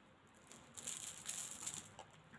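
Soft rattly rustling, starting about half a second in and lasting about a second and a half.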